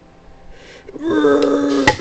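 A long, high, strained vocal cry while fingers force at a Mountain Dew, then one sharp pop near the end as the soda bursts open, followed by a hissing spray.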